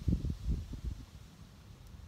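Wind buffeting the phone's microphone: uneven low rumbling gusts in the first second that die down to a faint hiss.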